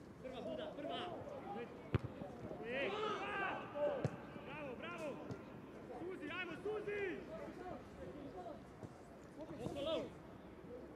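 Pitch-side sound of a football match: several voices shouting and calling over each other, with sharp knocks of the ball being kicked about two seconds and five seconds in.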